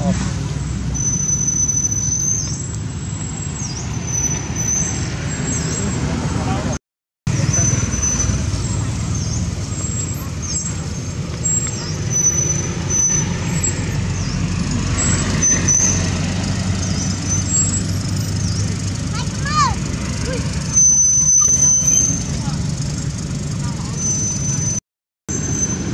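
Outdoor background noise: a steady low rumble with thin, high chirps recurring over it and a few short squeaky calls near the end. The sound drops out briefly about seven seconds in.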